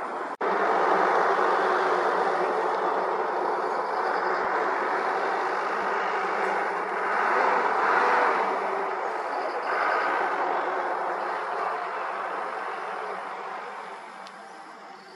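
Vehicle engine and road noise, probably from an auto-rickshaw. The noise is steady after a short break early on, swells twice in the middle as the auto-rickshaw passes close by, and fades near the end.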